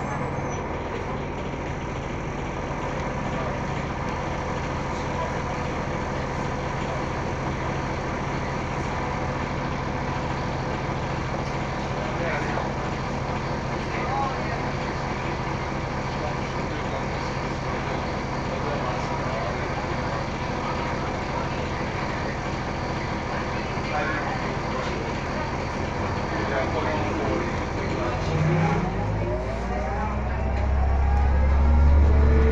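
Inside an Orion VII hybrid-electric transit bus standing with its drivetrain running: a steady hum with several constant tones. Near the end a rising whine and a deeper rumble come in as the bus starts to move off.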